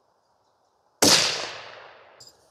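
A single shot from a suppressed bolt-action precision rifle about a second in: a sharp report that dies away over roughly a second.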